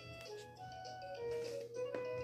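Electronic baby toy playing a jingle: a simple melody of clear, beep-like notes, with a light tap near the end.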